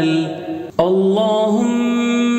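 Male voice chanting the Arabic salawat on the Prophet in long, held, ornamented notes. The voice fades and breaks off briefly about three-quarters of a second in, then comes back on a new held note.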